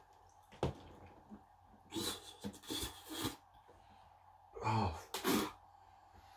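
A man making sharp breathy and throaty noises, not words, as he reacts to a hard sesame brittle he dislikes. There is a click under a second in, then a cluster of quick noisy bursts about two seconds in, then two short voiced grunts near the end.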